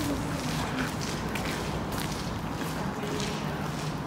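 Footsteps of a person walking at a steady pace across stone paving, over a low steady hum.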